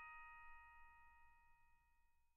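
The last chime of an outro jingle ringing out: several steady bell-like tones fading slowly away to near silence.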